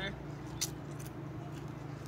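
A single short, crisp crunch about half a second in, a bite into a thin potato chip, over a steady hum of street traffic.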